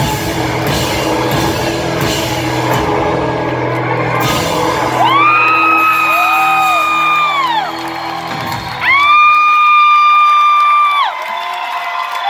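Live rock band with drums and electric guitars playing, the full band dropping out about four to five seconds in and the last low notes fading. Then come two long, high whoops close to the microphone, each held steady for about two and a half seconds with a glide up at the start and a fall at the end.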